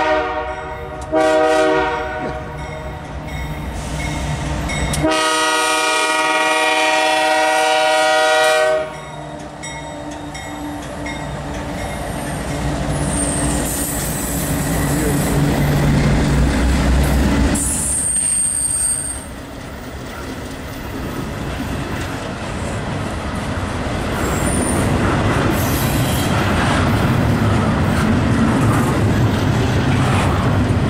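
Freight locomotive horn on a GE C44-9W sounding a chord: the end of one blast, a short blast about a second in, then a long blast of about four seconds, fitting the close of a grade-crossing signal. The lead locomotives then rumble past, followed by double-stack intermodal cars rolling by with steady wheel noise and a couple of brief high wheel squeals.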